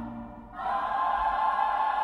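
Choral singing from a stage musical's ensemble: earlier music dies away, then a full held chord comes in about half a second in and holds steady.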